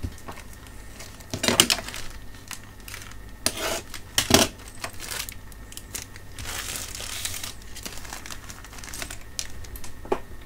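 Plastic packets of new binding posts crinkling as they are handled and opened, with a few sharp clicks and knocks of small metal parts, the loudest about four seconds in.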